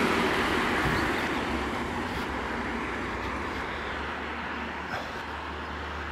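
Road traffic beside the pavement: a vehicle's tyre and engine noise, loudest at first and fading away over the first few seconds, over a steady low traffic rumble.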